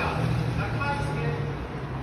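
A low-pitched voice speaks briefly over a steady low rumble of street traffic.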